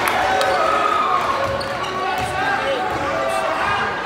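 Basketball dribbled on a hardwood gym floor during play, with crowd voices and shouts echoing in the hall.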